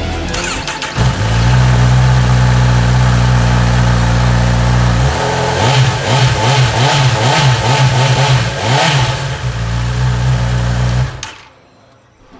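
Honda CB1000R's inline-four engine starting about a second in and idling. It is revved in a series of blips rising and falling for a few seconds, settles back to idle, and is switched off near the end.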